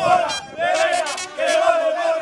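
A group of men chanting together in unison in a celebration chant, loud short phrases repeated in a steady rhythm.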